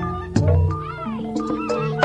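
Sandiwara ensemble music in the Cirebon–Indramayu style, with steady ringing tones, sharp drum strokes, and a pitched line that rises and falls about halfway through.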